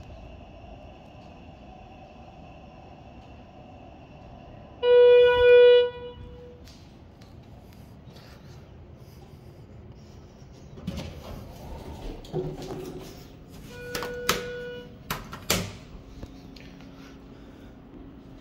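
Schindler HT 330A hydraulic elevator's electronic arrival chime sounding twice, loud, about five seconds in. Then door and car clunks, and the chime again, softer and once, about fourteen seconds in, with sharp knocks as the car arrives and its doors work.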